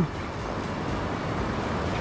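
Steady rushing of fast-flowing river water from the current and falls.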